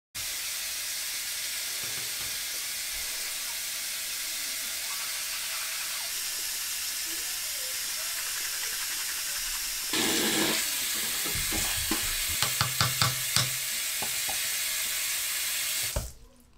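A shower running steadily. About ten seconds in, the sound turns louder and fuller, with a run of sharp clicks and knocks over the next few seconds.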